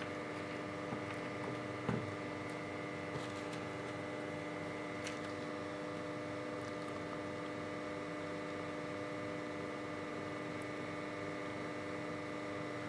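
Steady electrical mains hum, a constant buzz made of several steady tones, with a few faint light clicks, the clearest about two seconds in.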